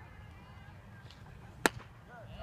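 A single sharp pop of a baseball smacking into the catcher's leather mitt, about one and a half seconds in.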